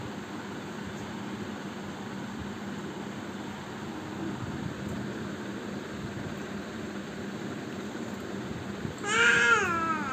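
Infant's loud, high-pitched squeal near the end: one call that rises and falls over about a second, then a shorter wavering one. Before it there is only a steady low hum.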